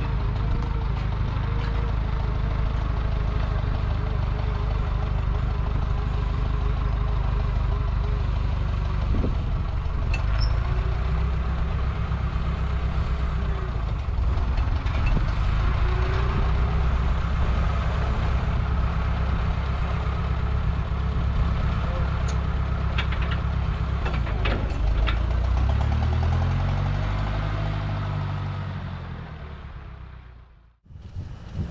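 Engine of an old rough-terrain forklift running steadily as it lifts and carries a pickup truck, with a few metal clanks past the middle. Near the end the revs rise and fall, and then the sound fades out.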